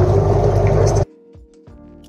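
Air from a bubbler bubbling through a tank of compost extract to aerate it: a loud, steady rumble and bubbling that cuts off suddenly about a second in. Quiet background music with plucked notes follows.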